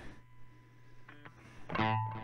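Electric guitar, a Squier Stratocaster on its DiMarzio Super Distortion bridge pickup, played through a breadboarded Marshall Bluesbreaker overdrive circuit. A faint low note sustains, then a louder note is picked near the end.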